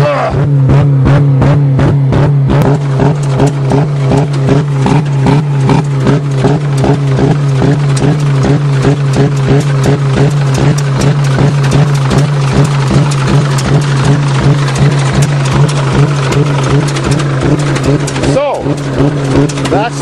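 Saturn car engine running flat out with a rock holding the gas pedal down, a steady high engine note with a rapid, even pulsing through it. The engine note dips briefly near the end.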